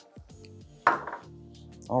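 Background music holds a soft steady chord. About a second in, a single sharp knock sounds as a small glass perfume bottle is set down on a wooden desk.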